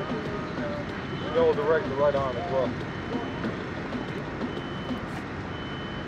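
Outdoor ambience: a steady hum of traffic noise, a voice heard briefly about a second in, and a faint high beep repeating about once a second like a vehicle's reversing alarm.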